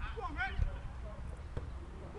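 Men's voices calling out on a football pitch: a short call about half a second in, then fainter voices, over a steady low rumbling noise.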